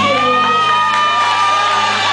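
A live rock band holds its final chord while a long high note rings over it, and the audience cheers and whoops.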